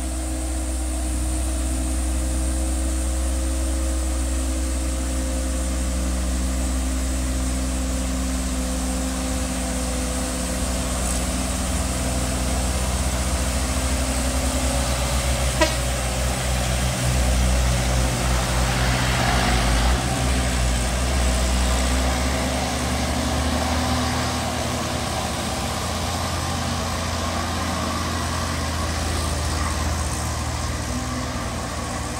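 Diesel light truck labouring up a steep grade, a steady low engine drone that swells as the truck passes close about halfway through and then eases as it pulls away up the hill. A single sharp knock is heard about halfway through.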